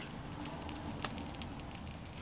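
Wood fire with a burning magnesium plate, crackling with scattered small pops over a steady low rush.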